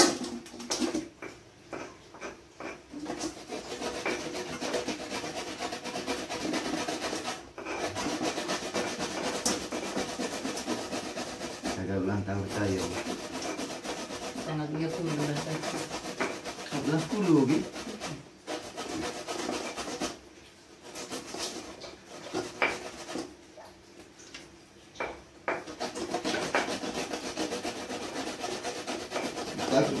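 Something being grated on a metal box grater in repeated rasping strokes, with a pestle grinding spices in a mortar alongside. The scraping eases for a few seconds past the middle, then starts again.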